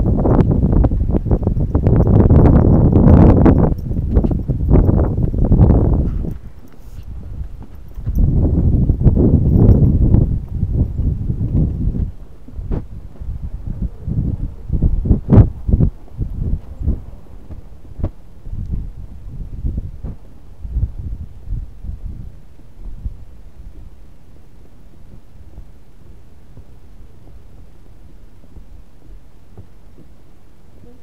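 Footsteps knocking on wooden boardwalk planks, mixed with heavy rumbling close to the camera's microphone. The rumble and knocks are loud for the first six seconds and again from about eight to twelve seconds in. After that come scattered single knocks that die away to a low steady background near the end.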